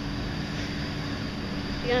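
Southern Class 377 Electrostar electric multiple unit approaching the station, a steady low rumble with a faint held hum.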